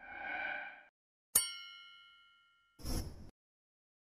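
Animation sound effects: a short swelling tone, then a bright bell-like ding about a second and a half in that rings out for about a second, and a brief whoosh near the end.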